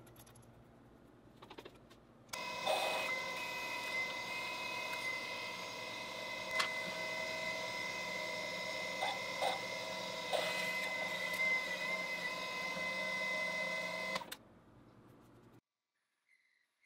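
Milling machine spindle running with a steady whine while drilling holes in a soft cast pewter bar, with a few brief ticks from the cut. It starts about two seconds in and cuts off suddenly near the end.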